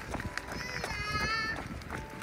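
A child's high voice calling out a name in one long, drawn-out call, over the quick footsteps of someone running on asphalt.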